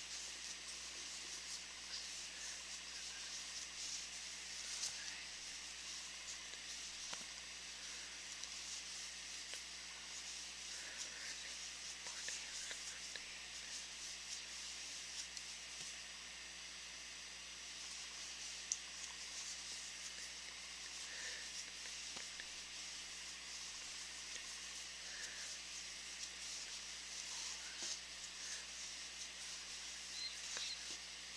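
Faint, soft rustling of worsted-weight yarn drawn over and through a 4 mm aluminium crochet hook as chain stitches are worked, over a steady background hiss, with one small click about two-thirds of the way through.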